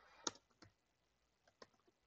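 Three faint, spaced-out keystrokes on a computer keyboard.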